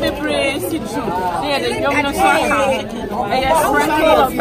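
Speech only: a woman talking animatedly, with other voices chattering around her.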